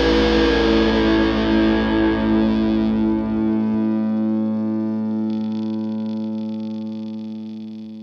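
Rock song's final chord on distorted electric guitar, left ringing and slowly fading out. The lowest notes cut off about halfway through, and the rest decays away.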